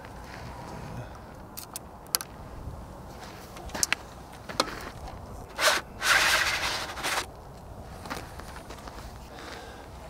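A few small clicks and knocks from handling a large-format camera. About six seconds in there is a scraping slide of about a second as the dark slide is drawn out of an 8x10 sheet-film holder.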